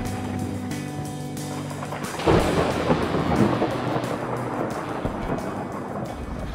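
Thunderstorm sound effect over music: steady rain hiss and held musical notes, then a sudden thunder crack about two seconds in that rumbles on for a second or two.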